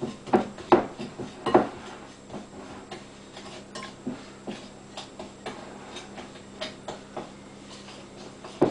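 Spoon knocking and scraping against a glass mixing bowl while stirring cake batter ingredients. Three louder knocks come in the first two seconds, then lighter, irregular ticks.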